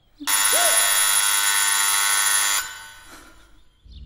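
Electric buzzer sounding once: a loud, steady buzz about two seconds long that starts abruptly and cuts off suddenly.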